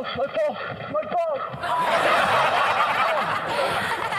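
A man crying out in pain, 'My balls!', after a crash, followed about a second and a half in by a loud burst of laughter.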